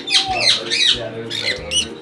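Caged parrots giving several shrill squawks, a quick run of sweeping calls in the first second and another near the end.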